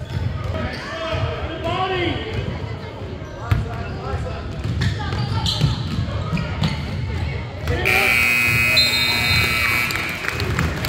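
A basketball is bouncing on a gym floor amid voices. Near the end a gym scoreboard buzzer sounds one steady tone for about two seconds.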